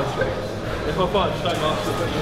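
A voice over steady background music.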